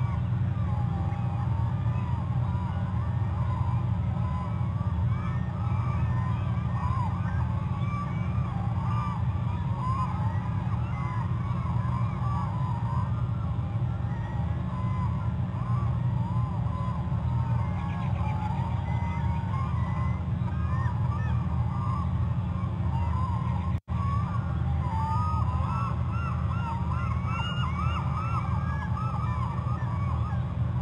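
A dense chorus of many short, overlapping animal calls over a steady low hum. The calls are busiest near the end, and the sound cuts out for a moment about three-quarters of the way through.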